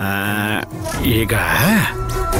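A man's voice with swooping rises and falls in pitch over background music with a low steady drone.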